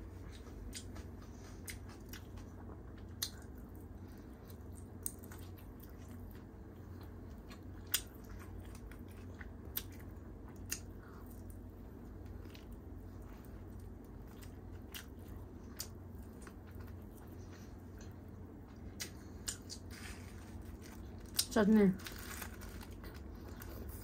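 Close-miked eating: a person biting and chewing tandoori chicken pulled apart by hand, heard as scattered sharp clicks and mouth sounds over a steady low hum. A short spoken word comes at the very end.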